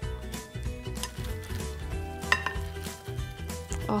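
Wooden salad servers tossing a dressed salad in a large bowl: irregular clicks and knocks of wood against the bowl and each other.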